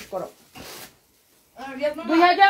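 A brief rasping rustle of saree fabric being handled, between bits of a woman's speech; the sound then drops out completely for about half a second before her voice returns.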